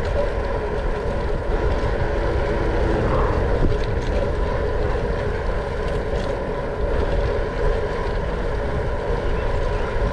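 Wind rushing and buffeting over the microphone of a chest-mounted camera on a moving bicycle, with a steady hum underneath.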